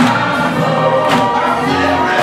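Men's gospel choir singing over an electric bass guitar, with a sharp beat every couple of seconds.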